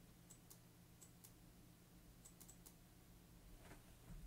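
Near silence: room tone with a low, steady hum and a few faint, sharp clicks, some singly and some in quick pairs, typical of a computer keyboard or mouse at a desk.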